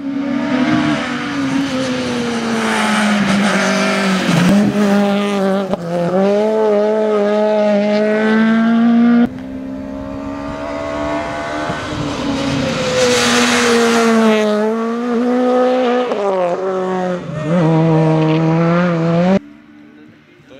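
Peugeot 208 rally car's engine at high revs, its note climbing and dropping repeatedly through gear changes and lifts as it drives flat out. The sound changes abruptly twice, about halfway through and near the end.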